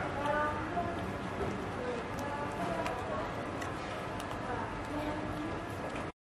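Dining-room background of indistinct, low voices, with scattered light clicks and clinks of cutlery and dishes.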